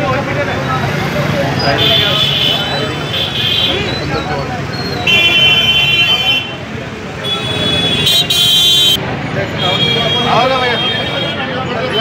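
Crowd of men talking over one another while high-pitched vehicle horns honk about five times, several honks held for over a second.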